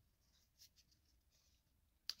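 Near silence, with faint brief rustles of baseball cards being handled, the clearest a little over half a second in.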